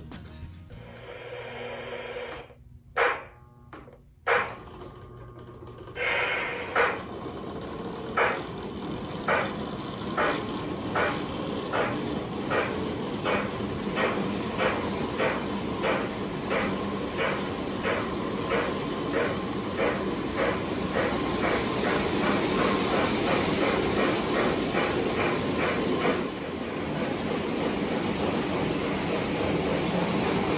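Lionel O-gauge Reading T1 locomotive and passenger cars running on three-rail track: a couple of knocks in the first seconds, then a steady running rush with a rhythmic clicking that speeds up as the train gathers speed, evening out into a steadier rush near the end.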